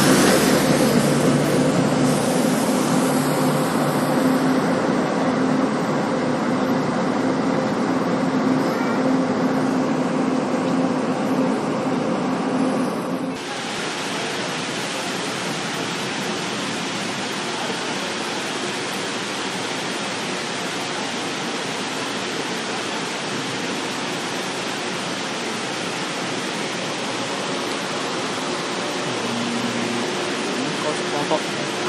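Train running noise heard along the side of a moving Taiwan Railway train, a steady hum that fades slowly. About thirteen seconds in, it cuts abruptly to an even rushing hiss.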